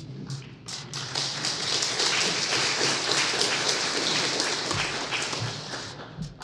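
Congregation applauding in a large room: many hands clapping, swelling over the first second, holding steady, then thinning out near the end.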